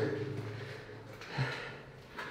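Mostly quiet room tone with a steady low hum, as a voice trails off at the start and one brief soft sound comes about one and a half seconds in.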